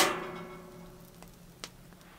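A single sharp struck note that rings and fades away over about a second and a half, followed by two faint clicks.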